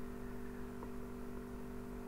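A steady low electrical hum with a faint background hiss, unchanging throughout.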